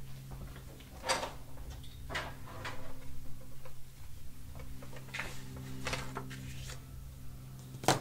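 Sheets of kraft cardstock handled and set down on a table: a few separate soft knocks and rustles, then a louder sharp knock near the end as a paper scoring board is put down. A low steady hum runs underneath.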